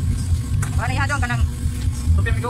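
A person's voice comes in for about a second, starting just over half a second in, over a steady low rumble.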